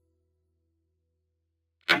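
Near silence with a faint low hum, then near the end a sudden sharp clack: the move sound of a xiangqi piece being set down on the digital board.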